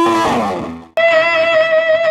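Electric guitar through a Beetronics Vezzpa fuzz pedal: a phrase dies away with pitches sliding downward and cuts to silence just under a second in. Then a new fuzzed note starts and holds, ringing steadily with a slight waver.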